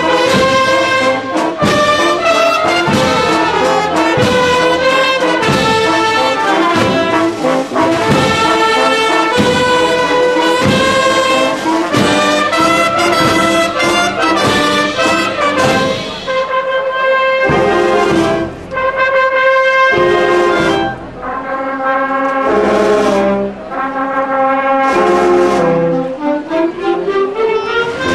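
Brass band playing a processional march, trumpets and trombones over an even drum beat; about two-thirds of the way through the drum beat stops and the brass holds long chords with short breaks between them.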